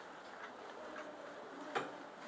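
Quiet room tone with a few faint ticks and one sharper click near the end.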